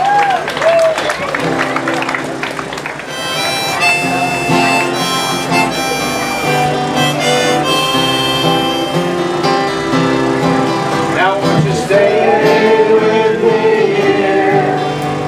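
A small live folk group playing the instrumental introduction of a new song, with acoustic guitar under a held, reedy melody line. A group of singers comes in near the end.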